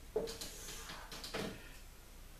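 Dry-erase marker drawing lines on a whiteboard: a few short, faint strokes, one just after the start and another about a second and a half in.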